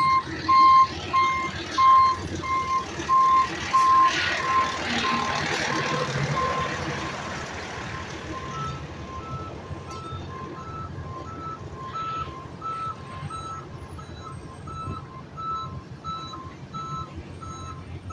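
Truck reversing alarm beeping steadily, about three beeps every two seconds, over a diesel engine running. The first alarm fades out about seven seconds in, and a second, slightly higher-pitched backup alarm carries on from about eight seconds. A swell of engine noise comes between about four and six seconds in.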